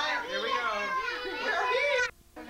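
Several voices, children among them, talking over one another in a lively jumble.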